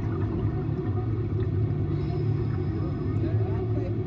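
Steady low rumble and hum inside a submarine ride's cabin, with faint voices near the end.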